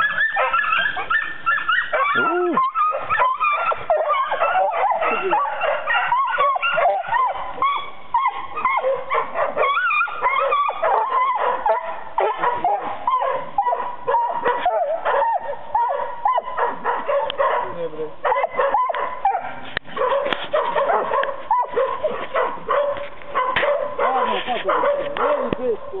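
Young hunting dogs yelping and barking without pause, a dense run of high, excited cries that rise and fall, as they bay a wild boar.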